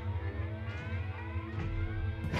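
Electronic sci-fi sound: a deep steady bass drone under several overlapping high whines that glide upward, building up.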